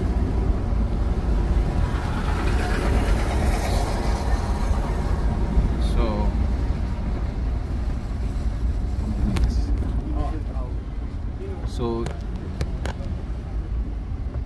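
A car driving slowly, heard from inside the cabin: a steady low rumble of engine and road noise. Brief voices come through now and then.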